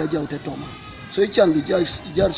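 A man talking, with a dip in the middle and pitch sliding up and down in the second second.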